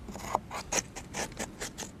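An oyster shell scraping charred wood out of a burnt-hollowed cypress log, in quick repeated strokes about four or five a second. This is the step in making a dugout canoe where the charcoal left by a small fire is chipped away.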